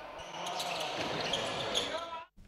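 Live court sound of a basketball game in a sports hall: a steady wash of players' and spectators' voices and movement on the court.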